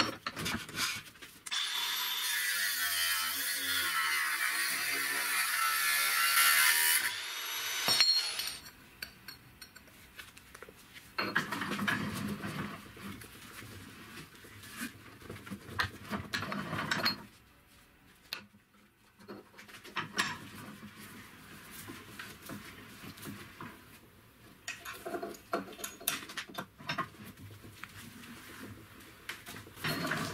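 Steel pipe being worked in a bench vise: a loud continuous abrasive noise for several seconds near the start, then a second stretch of rasping, sawing-like noise, then lighter knocks and handling of metal parts.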